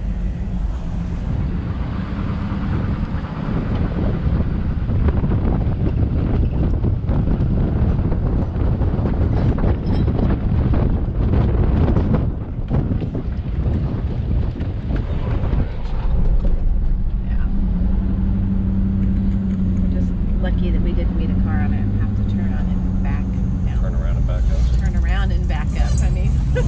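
Car driving slowly across a wooden-plank suspension bridge deck, its tyres rumbling and clattering over the loose boards, with the engine running beneath.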